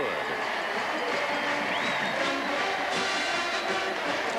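Marching band brass playing, with a stadium crowd cheering underneath.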